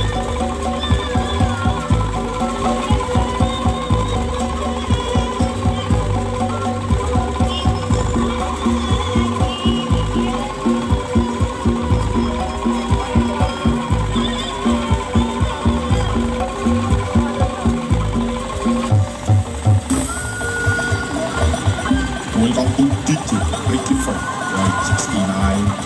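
Loud dance music played through a large street sound system's speaker stack, with heavy bass and a quick steady beat.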